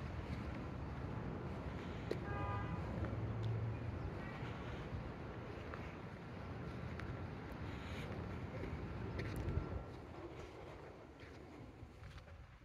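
Outdoor residential street ambience: low rumbling wind noise on a phone microphone over faint distant traffic, with a brief pitched call about two seconds in. It grows quieter near the end.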